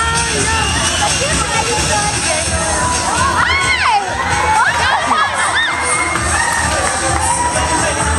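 A crowd screaming and cheering, with many high-pitched shrieks that are thickest in the middle, over dance music with a steady beat.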